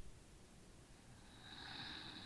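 A slow, faint breath picked up by a headset microphone: a soft rush of air that swells from about a second and a half in and carries on past the end.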